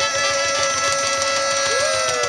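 Live band holding a long sustained chord: saxophone and trumpet hold steady notes over electric guitar and bass. Near the end a note slides up and back down.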